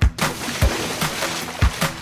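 Cartoon sound effect of a fire hose spraying water: a steady hiss that starts abruptly, over a children's-song backing beat with a kick about every half second.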